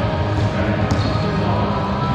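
A wallyball hit once about a second in, a single sharp smack, over continuous background voices.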